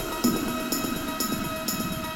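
Techno track in a breakdown: the kick drum drops out, leaving a sustained synth chord under high hi-hat ticks about twice a second.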